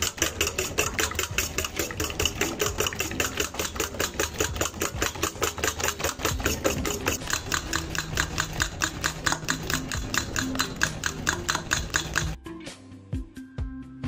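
Eggs being beaten by hand in a stainless steel bowl, the utensil clicking against the metal in a fast, even rhythm of about five strokes a second. Near the end the strokes drop suddenly to a fainter level under background music.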